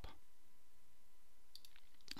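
Quiet recording room tone: a faint steady hum with a thin high tone, and two or three faint short clicks near the end.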